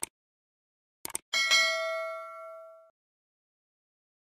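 Subscribe-button sound effect: a short mouse click at the start, two or three quick clicks about a second in, then a bright notification-bell ding that rings out and fades over about a second and a half.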